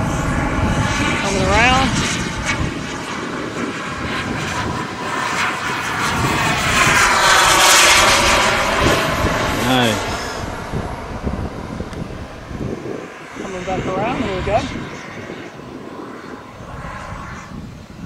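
RC model jet's kerosene turbine engine in flight, making a pass: a jet whine and rush that builds to its loudest about halfway through, then fades away as the jet moves off.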